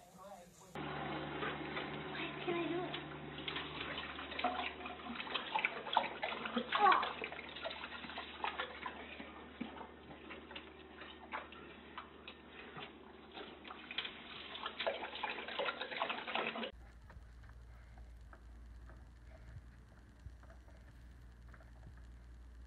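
Water splashing and running in a kitchen sink, with many small knocks and clatters. Near the end it gives way to a quieter room hum.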